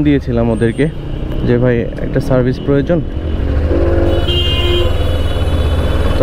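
Suzuki Gixxer motorcycle engine running at low speed in city traffic, with a voice over the first half. From about three seconds in the engine's steady low rumble is the loudest sound, and a brief high-pitched tone, like a vehicle horn, sounds around four seconds in.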